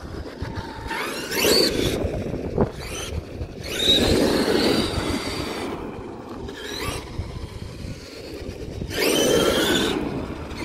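Radio-controlled monster truck driving on asphalt, its motor whining up in pitch in three bursts of acceleration, with tyre noise on the road.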